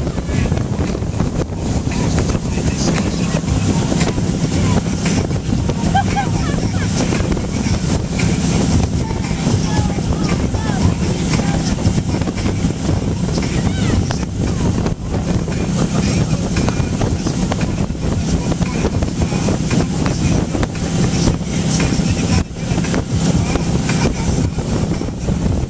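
Tow boat's engine running steadily at speed, with wind buffeting the microphone and the rush of the churning wake.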